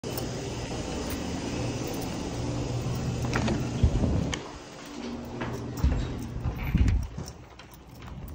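A steady low hum indoors, then knocks as a glass entrance door is pushed open about four seconds in, followed by a few more thumps as it swings shut behind.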